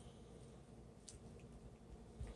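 Near silence: faint room tone, with one faint click about halfway through.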